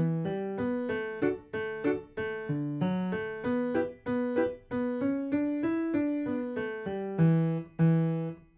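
Piano played with both hands: a brisk tune that starts with repeated short, detached chords, turns smoother, and ends on a long low note near the end.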